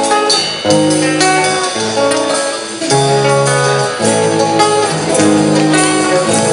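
Live band playing Argentine folk music, with guitar prominent in a run of held, stepping melody notes over a steady beat.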